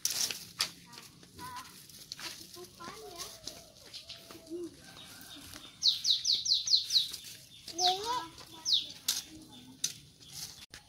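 A bird calling: a quick run of about six high, falling notes, then two more single notes a second or two later.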